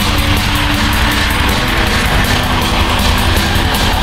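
Black metal: a dense wall of distorted guitars and drums, with fast, even cymbal hits about six times a second.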